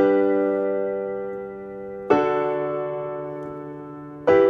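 Piano playing a G major chord, struck at the start and again about two seconds in, each time left to ring and fade.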